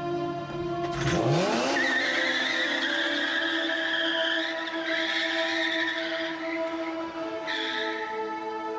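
A car engine revs up about a second in, then the tyres squeal for several seconds as the car drifts sideways, with a shorter squeal near the end. Steady background music plays underneath.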